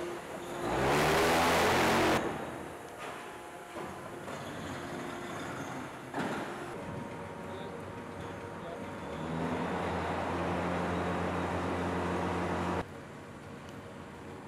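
A motor running with a loud rising surge about a second in, then a steady hum that swells again from about nine seconds in and cuts off suddenly near the end.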